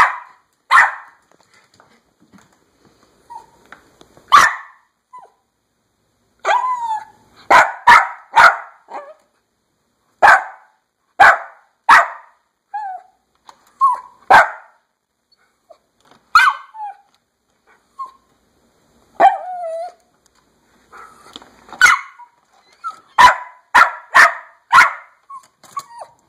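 A Pomeranian yapping, demanding to be let outside. The high, sharp barks come singly and in quick runs of three to five, with a few brief whines between them.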